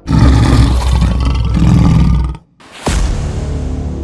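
Loud intro sound effect layered on music: a roar with a heavy low rumble for about two and a half seconds, a brief drop to silence, then a sharp hit about three seconds in, after which the music carries on.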